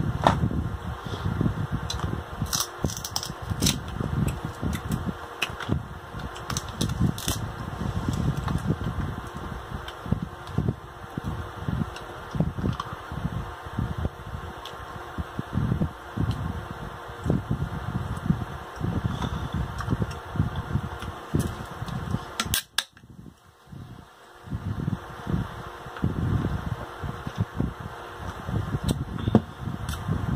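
Close-miked eating of boiled king crab and lobster: wet chewing and lip-smacking with frequent sharp clicks, stopping briefly about three-quarters of the way through.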